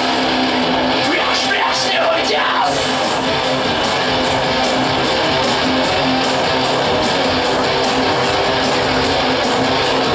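Live industrial metal band playing loudly: electric guitars and bass guitar, with a few falling pitch slides about one to three seconds in.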